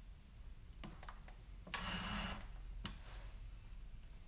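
A few faint sharp clicks and a short soft rustling noise over low room hum in a small room.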